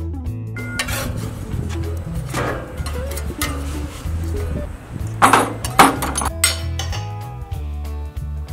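Metal tongs and a metal spatula clinking against a grill grate and each other as a pizza crust is flipped. There are several clinks, and the two loudest come a little past the middle. Background music with a steady bass line plays underneath.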